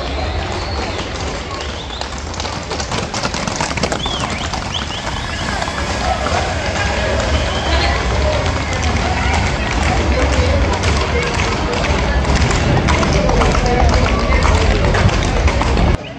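Hooves of Camargue horses and bulls clattering on the asphalt street as the herd runs through, over crowd voices and shouts. The sound grows louder towards the end.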